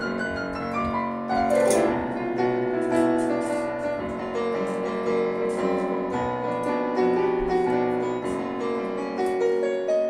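Digital piano played solo: sustained chords and melody, with a quick descending run of notes about a second and a half in.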